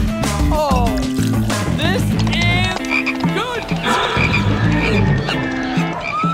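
Cartoon soundtrack: music with a steady bass line under a string of short, comic gliding vocal-style sound effects, some with a croaking quality.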